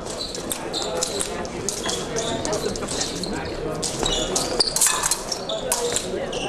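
Fencers' footwork on the piste: repeated short thuds and taps of shoes as they advance and retreat, with a few sharper clicks. There is a murmur of voices from the hall underneath.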